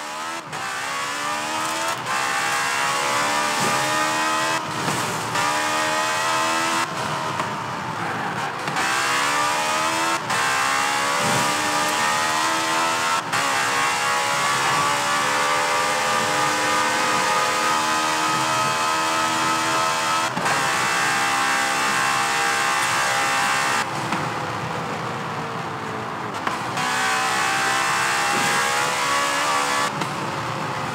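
KTM X-Bow race cars' engines revving hard on track, the pitch climbing and dropping again and again as they run through the gears. The sound is broken by several abrupt cuts between takes.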